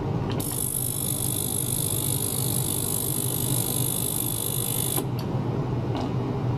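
Small ultrasonic cleaning tank fitted with probes, running with a steady low buzzing hum. A high-pitched whine made of several steady tones switches on abruptly about half a second in and cuts off suddenly about five seconds in.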